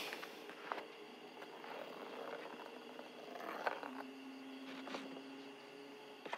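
Faint handling of a paper envelope, a few soft crinkles and clicks, over quiet sustained low tones.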